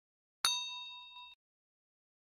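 A bell-like ding sound effect, struck once about half a second in, ringing with several clear tones and cut off abruptly about a second later. It is the notification-bell chime of a subscribe-button animation.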